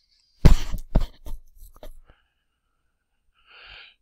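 A man coughing: a loud sharp cough about half a second in, followed by a few smaller coughs over the next second and a half. A faint breath in comes near the end.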